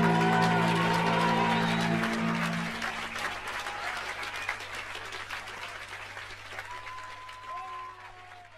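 A live band's final held chord dies away about two to three seconds in, under a club audience's applause, which then fades out steadily.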